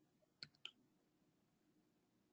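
Near silence broken by two faint clicks about half a second in, a fifth of a second apart.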